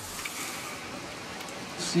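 Steady hiss of torrential rain and floodwater running down a street.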